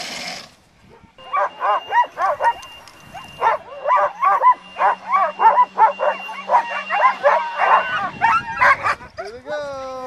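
Several harnessed sled dogs barking and yipping in rapid, overlapping bursts, the eager clamour of a team waiting to run. A longer drawn-out call comes near the end.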